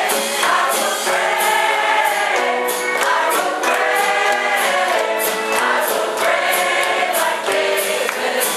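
A large mixed choir singing an upbeat gospel song, with a steady beat of sharp hits running under the voices, about two to three a second.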